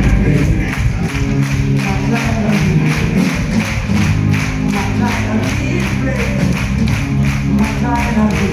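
Live rock band playing over a club PA, heard from inside the audience: drums keeping a steady fast beat under bass and electric guitar.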